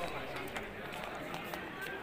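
Background chatter of several people's voices talking, with a few faint clicks.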